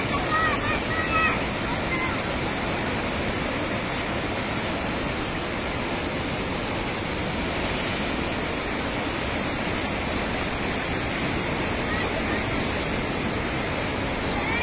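Steady, dense rushing of a muddy flash flood torrent sweeping through a valley. Faint distant voices come in over it in the first second or so.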